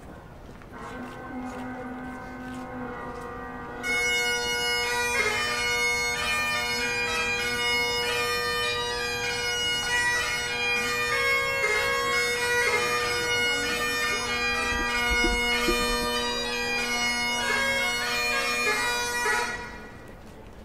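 Great Highland bagpipes: the drones strike up about a second in, the chanter comes in loud with the tune about four seconds in, and the playing stops cleanly just before the end.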